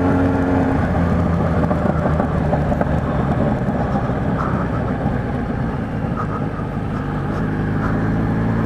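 Kawasaki Z1000's inline-four engine running steadily through a newly fitted 4-into-1 aftermarket exhaust, with the baffle insert in, while the bike is ridden at a moderate, even pace.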